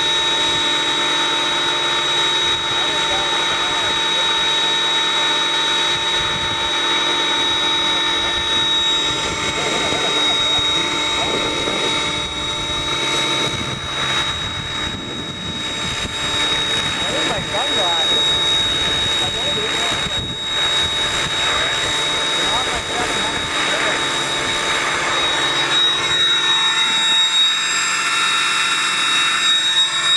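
Align T-Rex 700E electric RC helicopter flying overhead: a steady high whine from its motor and gears over the rush of the rotor blades.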